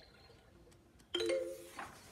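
A short sound holding a steady tone about a second in, then the rustle of a page of a hardcover picture book being turned near the end.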